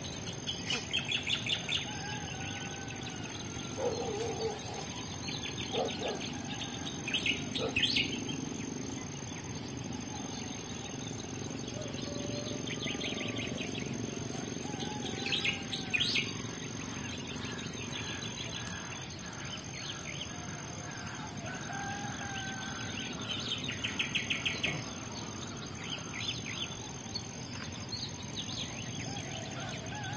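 Birds calling: rapid chattering trills that come several times, with soft whistled gliding notes. Behind them runs a steady high whine and a high tone that pulses about every two seconds.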